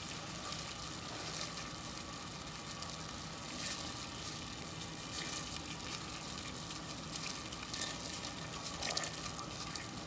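Butter, sugar and corn syrup candy mixture bubbling and sizzling in a stainless steel pot on the stove, a steady crackling hiss with fine pops as it heats toward the soft-ball stage.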